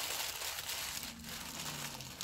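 Clear plastic packaging bags crinkling as they are handled, a steady rustle that fades out near the end.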